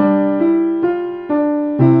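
Yamaha upright piano played with both hands in a simple beginner's piece: an even run of single notes, about two a second, over held lower notes. A new low bass note is struck near the end.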